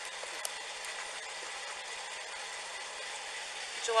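Steady hum and hiss of an idling vehicle engine, with two faint clicks in the first second.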